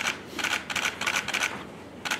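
Press photographers' camera shutters firing in quick bursts of several clicks a second, then pausing near the end.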